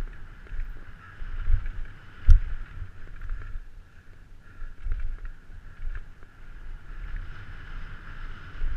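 Downhill mountain bike ridden fast over rough dirt trail, heard through a helmet-mounted camera: wind buffeting the microphone and the bike rattling over bumps, with irregular knocks from hard impacts, the loudest about two seconds in, over a steady mid-pitched hum.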